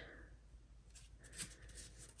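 Faint rustle of a paper beverage napkin being folded and pressed flat by hand.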